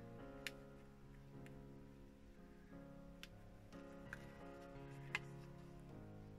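Faint background music of held, slowly changing notes, with five light clicks spread through it as hands handle a paper card.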